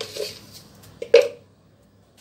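A person's brief throat sound about a second in, with fainter short sounds at the start.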